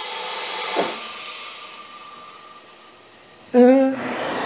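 Compressed air hissing as the Morgan G-100T injection molding machine's pneumatic clamp closes on the mold: a steady hiss with a faint whistle in it, fading away over a couple of seconds. The clamp does not quite close fully on the mold.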